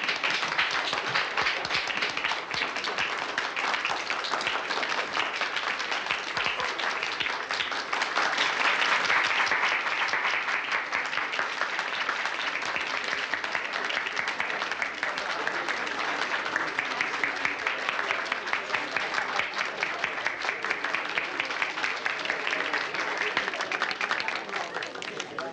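A roomful of people applauding: dense, steady clapping that swells a little about a third of the way in.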